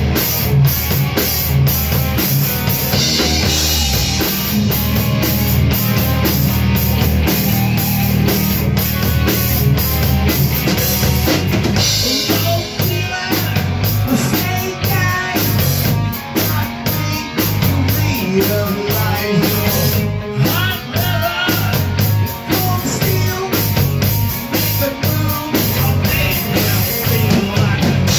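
Rock band playing live: drum kit and electric guitars together, with a steady driving beat. The low part of the music changes to a new pattern about twelve seconds in.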